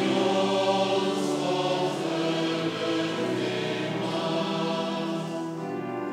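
Church congregation singing a verse of a metrical psalm together, in slow, long held notes.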